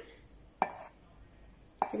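Steel bowl knocking against the steel jar of a mixer-grinder as grated coconut is tipped in: two short metallic knocks, one about half a second in and one near the end, with quiet between.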